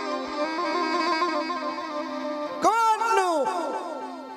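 Live Gujarati devotional dakla music: a harmonium and violin hold a steady drone-like melody with no drumming. About two-thirds of the way in, a male singer's voice enters with long, wavering notes that swoop up and down in pitch.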